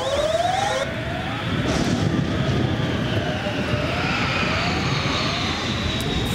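Sound effect of an airliner crashing. A rising whooping alarm tone repeats about one and a half times a second and fades out near the end. A fast high warble cuts off about a second in, and a rushing roar with a sweeping whine, like a plane in a dive, builds up.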